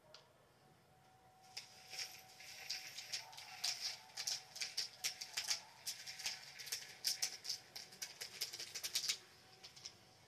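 Tiny plastic diamond-painting beads pouring through a plastic funnel into a small bottle, a dense rattling patter of clicks that starts about a second and a half in and stops shortly after nine seconds.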